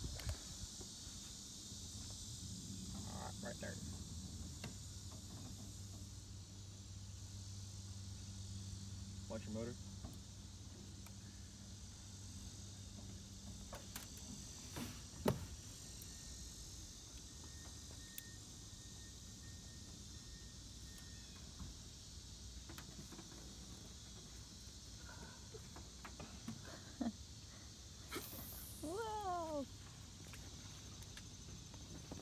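Lakeside outdoor ambience with insects droning steadily. A low steady hum runs through the first half, a few sharp clicks fall in the middle, and a short run of falling chirps comes near the end.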